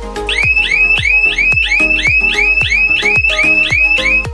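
Intrusion-alarm siren of a wired burglar alarm system, set off by the door sensor opening in zone 1 while the system is armed. It sounds as a rapidly repeating rising electronic chirp, about three to four a second, starting a moment in, over background music with a steady beat.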